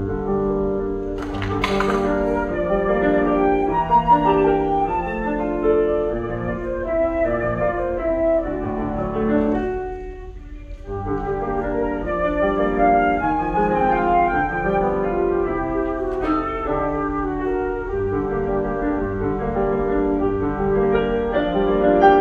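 Concert flute and Kawai grand piano playing a classical piece together, with the music dipping briefly softer about halfway through.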